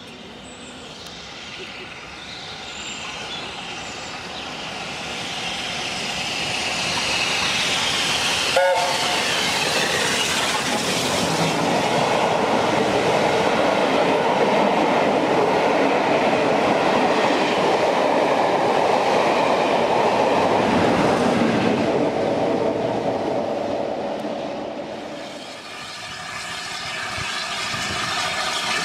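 LNER A4 steam locomotive No. 4464 Bittern and its train running through a station at speed. The sound builds as it approaches, with a short whistle about eight and a half seconds in. Then comes a long, steady rush of the coaches passing on the rails, which fades near the end.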